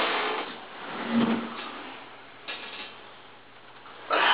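Scuffling and rustling as two people grapple in an arm-wrestling bout over a wooden table: clothes, chairs and table shifting. Loudest at the start, then fading.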